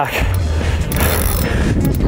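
Spinning reel working under the heavy load of a hooked shark, its mechanism grinding and clicking, over a steady low rumble of wind on the microphone.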